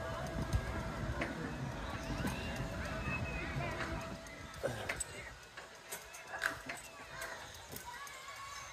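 Indistinct background voices, over a low rumble that fades about halfway through, with a few faint knocks.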